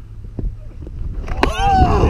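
Wind buffeting the microphone of a body-worn action camera, with a faint single knock just under halfway through. In the last half second a man's voice gives a loud, short call that falls in pitch.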